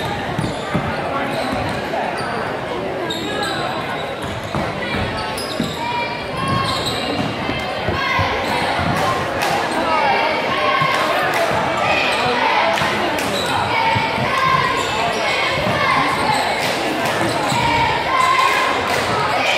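Basketball game sound in a gymnasium: a ball dribbled on the hardwood court with repeated bounces, under continuous chatter and calls from the crowd and players, echoing in the hall.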